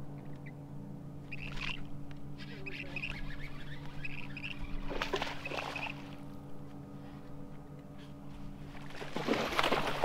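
A bird chirping in short repeated calls for the first several seconds over a steady low hum. A hooked bass splashes at the surface beside the boat about five seconds in, and again more loudly near the end as it is fought to the boat.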